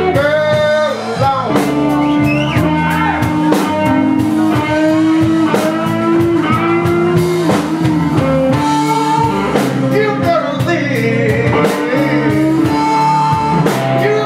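Live blues-rock band playing a blues song: electric guitar, bass guitar and drum kit, with a man singing into a microphone.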